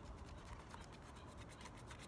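Faint scratching and rubbing of a small paper scratch-off card handled in the fingers, over a low steady rumble.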